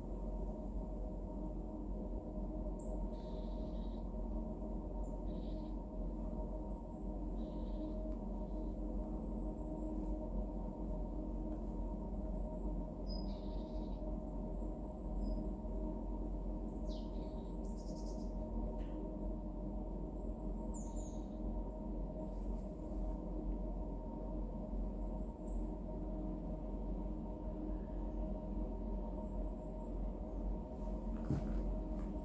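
A steady low drone with held tones runs throughout, and faint short bird chirps come and go above it.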